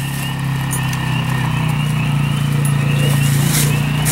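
A steady low mechanical drone that grows slightly louder toward the end, with faint short high chirps repeating a few times a second over it.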